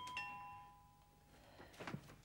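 Two-note ding-dong doorbell chime: a higher note, then a lower one, both ringing and fading over about a second. A few sharp clicks follow near the end.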